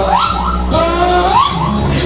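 Karaoke backing track of a pop song playing loudly, with a girl singing along into a microphone and sliding up between notes at the start and again near the end.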